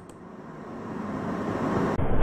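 A rushing noise that swells steadily louder over two seconds, a whoosh-like transition effect rising into the outro.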